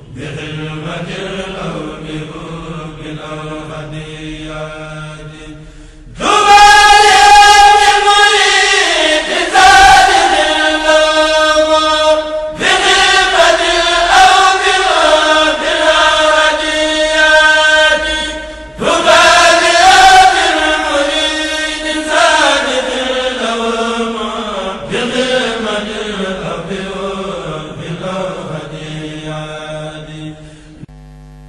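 Vocal chanting of a Mouride xassida (Wolof religious poem), sung in long, wavering held notes. It is quieter at first, then much louder from about six seconds in.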